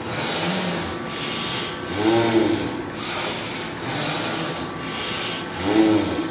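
Forceful, noisy breathing through the nose with one nostril held closed, in a steady rhythm of roughly one stroke a second, as in alternate-nostril pranayama. A short voiced sound breaks in about two seconds in and again near the end.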